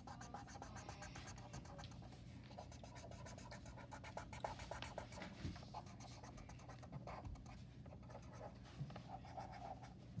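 Black felt-tip marker scribbling on paper in many short, quick strokes, filling in small shapes; faint.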